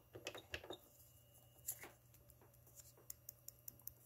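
Faint clicks of buttons being pressed on a Fostex MR-8HD digital multitracker's panel: a few scattered at first, then a quick run of about six near the end.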